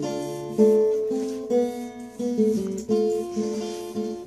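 Instrumental break in a song: acoustic guitar strumming and plucking sustained chords, a new chord about every second.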